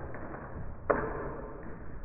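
A small dog running on a low plank board raised on feet, its paws knocking on the board, with one sharp knock and a short ringing rattle about a second in.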